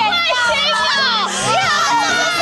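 Several high-pitched young women's voices talking and exclaiming over one another, with background music underneath.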